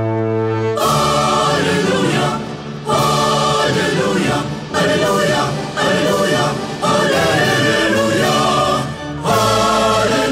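Choral music with orchestral backing: a held brass-and-orchestra chord breaks off about a second in, then a choir sings in short phrases with brief pauses between them.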